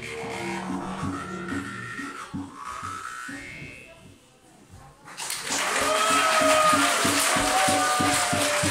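Jaw harps twanging in a steady rhythm, their overtones gliding up and down, with a didgeridoo drone beneath at first. The music fades almost to nothing about four seconds in. About five seconds in it comes back louder, with a hissing, rattling noise over the quick twangs.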